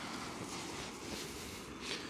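Jetboil camping stove's gas burner running under a moka pot with a steady hiss.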